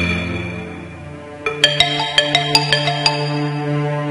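Background film-score music: a sustained synth pad with a quick run of about eight struck, ringing notes starting about a second and a half in.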